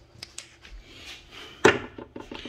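Scattered light clicks and knocks of hands handling parts and wiring in a car's engine bay, with one sharper, louder knock near the end.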